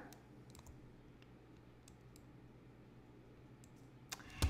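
Near silence: room tone with a faint low hum and a few faint, scattered clicks.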